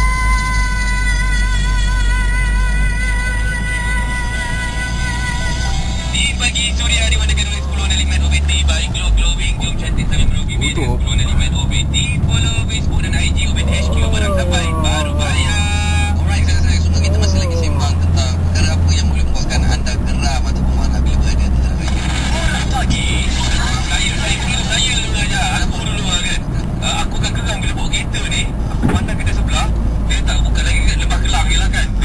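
Car engine and road noise heard from inside the cabin while driving, a steady low drone, with music and voices playing over it.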